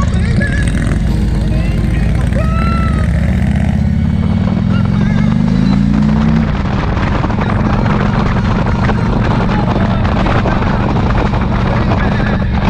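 Motorcycle engine running while riding, with wind rushing over the microphone. About four seconds in the engine pitch rises as the bike accelerates, then drops back after about two and a half seconds, as at a gear change.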